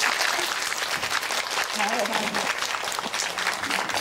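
Audience applause, the dense steady patter of many hands clapping, with a short laugh from a voice about two and a half seconds in.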